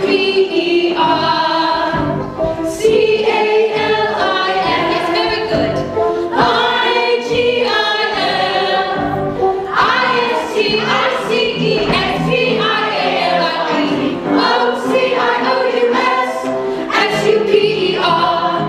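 A large stage-musical chorus of mixed voices singing together in an ensemble number.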